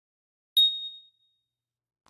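A single bright ding about half a second in: a struck chime-like tone with a sharp attack whose high pitch rings on and fades over about a second, the intro sound accompanying a channel logo.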